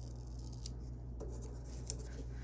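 Fingers rubbing and pressing a paper sticker down onto a planner page, with a couple of faint ticks, over a steady low hum.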